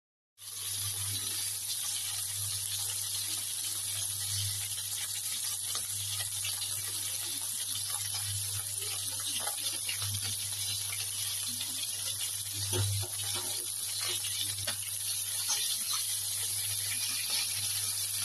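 Chicken wings shallow-frying in hot oil in a skillet: a steady sizzling hiss with small pops and crackles scattered through it, over a steady low hum.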